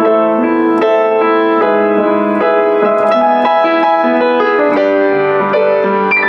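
Kawai CE-7N upright acoustic piano, built around 1982, being played: a flowing run of chords and melody notes, with new notes struck about every half second and ringing on into the next.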